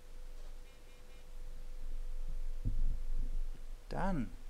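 Steady electrical hum with a faint high tone over it. A low thud comes about two-thirds of the way in, and a short falling-pitched sound right at the end.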